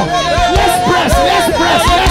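Many voices praying aloud in tongues at once, a loud, continuous mass of overlapping voices, over music with a steady beat about three times a second.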